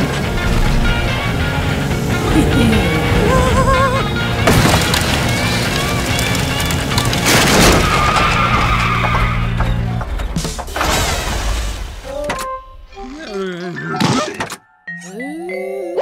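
Cartoon soundtrack: music under car sound effects and crashes, with several sharp impacts. After about twelve seconds the busy mix thins out into sparser cartoon effects with sliding pitches.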